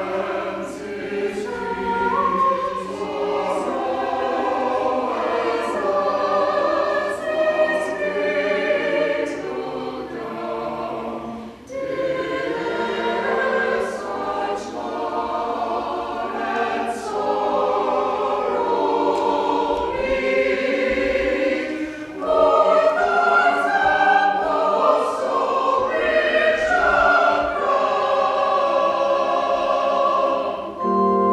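Mixed church choir of men's and women's voices singing a choral piece, breaking briefly between phrases about twelve and twenty-two seconds in.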